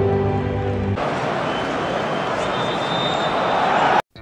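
About a second of music with sustained notes, then a sudden cut to a large football stadium crowd cheering, swelling toward the end. It is the cheer for a goal that VAR is checking and later disallows.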